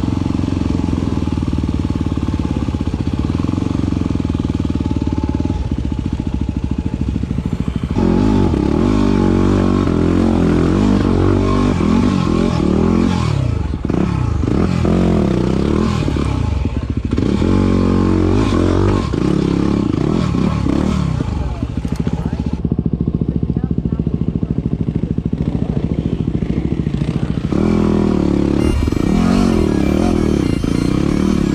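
Yamaha WR250R's single-cylinder four-stroke engine running and being revved up and down again and again, its pitch rising and falling.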